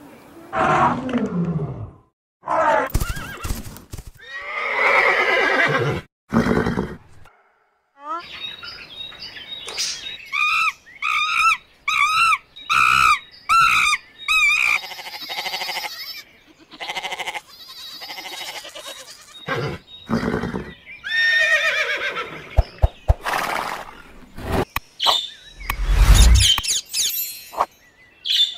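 Separate animal calls cut one after another, with brief silent gaps. Camels give long, low calls in the first few seconds. A quick run of about eight repeated calls follows, from macaques.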